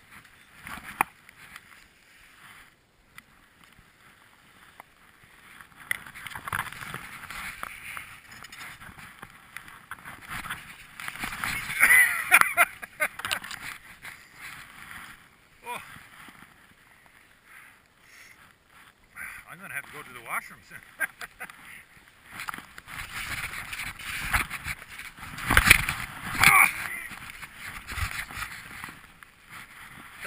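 Skis scraping and hissing through chopped-up snow on a steep descent. The noise comes in two long loud stretches, one from about six seconds in and one through the last third, with a few sharp knocks. The ride is rough: the skier says he sort of lost control on it.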